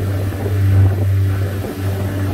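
Speedboat engine running at speed with a steady low drone, heard from inside the cabin.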